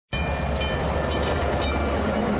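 Train rolling on the rails: a steady low rumble with sharp metallic clicks recurring about twice a second.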